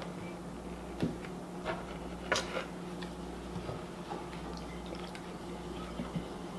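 A metal measuring cup scooping flour and tipping it into a glass mixing bowl: a few light clicks and taps roughly a second apart, the loudest about two and a half seconds in, over a steady low hum.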